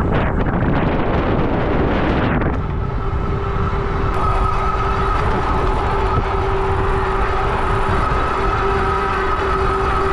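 Electric bike riding fast on pavement: wind rumble on the microphone and fat tyres rolling on asphalt. About two and a half seconds in, a steady two-tone whine from the hub motor working under full pedal assist comes through and holds.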